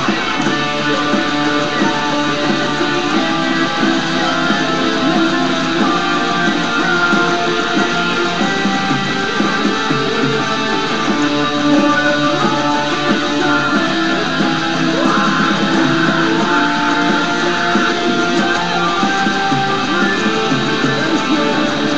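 Fender Jaguar-style electric guitar playing a metal riff, continuous and loud throughout.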